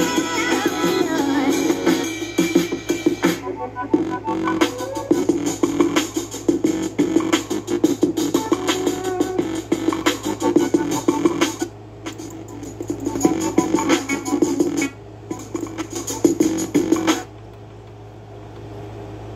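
Music played from a CD through the built-in speakers of a Sony CFD-S50 boombox, with a steady beat. It breaks off briefly several times, mostly in the second half, as buttons on the player are pressed.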